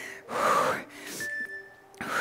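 A woman breathing hard from exertion during a workout move: one loud exhalation about half a second in, then a softer breath.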